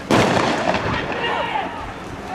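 A single loud gunshot from riot police just after the start, its echo dying away over about a second and a half.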